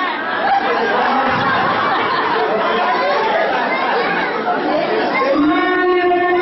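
Many voices talking and calling out at once in dense, overlapping chatter. Near the end, a group of women's voices breaks into steady, sustained singing.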